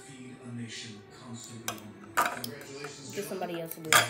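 A metal fork clinking and scraping against a plastic bowl while eating, a few sharp clicks about two seconds in and a louder clink near the end.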